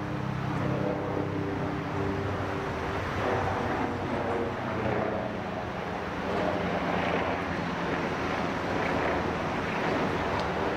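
Steady road traffic noise, with the hum of passing engines rising and fading.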